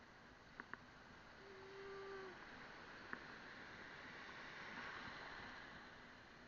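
Faint wash of surf and broken whitewater, swelling a little in the second half as the wave reaches the camera, with a few faint clicks.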